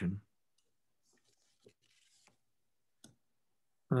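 A few faint, short clicks scattered through a quiet pause, one slightly louder about three seconds in.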